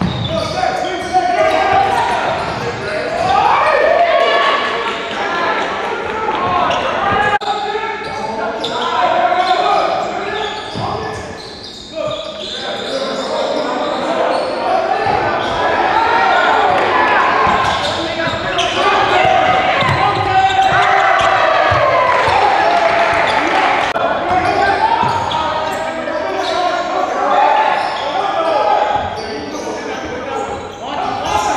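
A basketball being dribbled on a hardwood gym floor, with indistinct voices of players and onlookers going on almost throughout, in the reverberant sound of a large gym.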